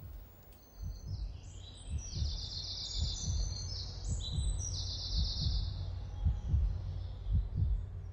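Birds singing in short, trilled phrases over low, uneven thudding like a heartbeat and a steady low hum.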